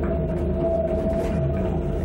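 Motion-simulator ride soundtrack: a steady droning tone held over a deep continuous rumble.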